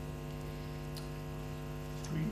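Steady electrical mains hum from the sound system, a buzzing drone with many even overtones, with a faint tick about halfway through.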